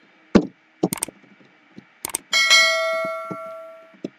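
A single bell-like ding sound effect, a bright ringing chime that comes about two seconds in and fades away over about a second and a half, from a subscribe-button overlay animation. A couple of short clicks come before it.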